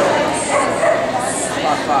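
A dog barking and yipping several times in short calls, with voices in the hall behind.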